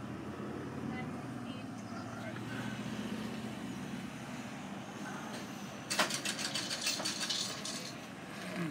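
Car idling, heard from inside the cabin: a steady low engine hum with faint muffled voices. About six seconds in comes a couple of seconds of quick rattling clicks and scrapes close to the microphone.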